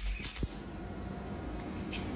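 Electric welding arc crackling and hissing steadily on steel, with a few short clicks near the start.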